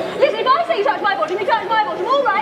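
Speech: a performer's voice delivering lines, with people chattering in the background.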